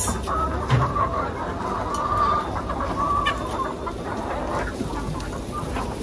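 A flock of white laying hens clucking, many short calls overlapping in a steady chorus.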